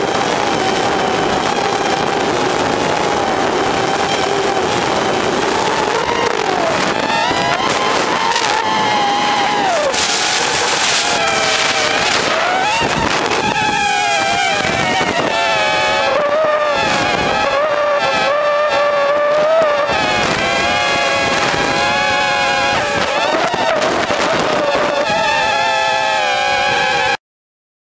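Whine of a multirotor camera drone's motors and propellers, a steady pitched hum that glides up and down as the throttle changes.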